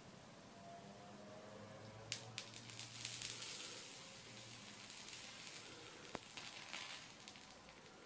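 Faint sizzling and crackling of wet match heads reacting with a drop of concentrated sulfuric acid, with a couple of sharp pops about two seconds in and another near six seconds. The reaction is slowed because the matches are wet, and the heads are beginning to catch fire.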